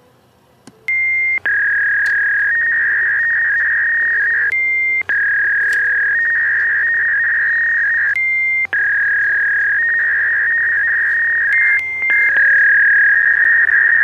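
Fax machine sounding modem handshake tones through its speaker: a loud, steady high tone that wavers slightly in pitch, interrupted about every three to four seconds by a short, slightly higher tone, over a faint low hum. The tones start about a second in.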